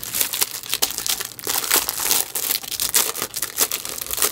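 Thin plastic packaging bag crinkling with many quick irregular crackles as it is pulled open by hand around a laptop sleeve.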